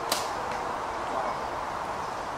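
A compound bow being shot: a single sharp snap of the string as the arrow is loosed, just after the start.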